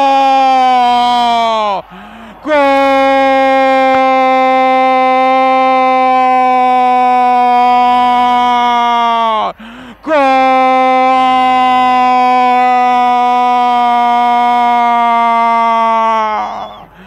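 A radio football announcer's long-held goal shout, one sustained note broken by two quick breaths, about two and ten seconds in, with the pitch sagging just before each breath.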